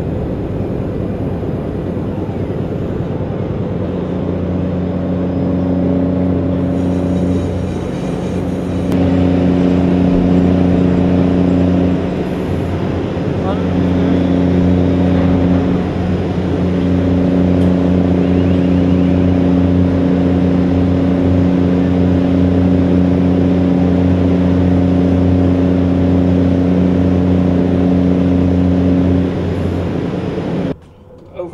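Heavy container-handling machinery running: a steady, loud low drone of engine and drive noise that grows louder about nine seconds in, eases briefly around twelve seconds and builds again.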